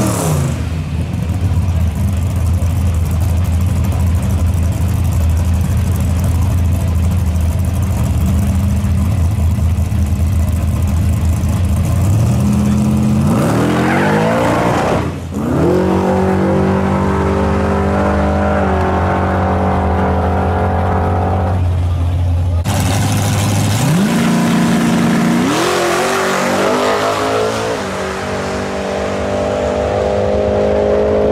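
Turbocharged LS V8 in a white Chevrolet pickup idling evenly for about twelve seconds, then revving up in rising steps as it moves off down the drag strip. The revs break off briefly about fifteen seconds in and again about twenty-two seconds in, then climb twice more near the end.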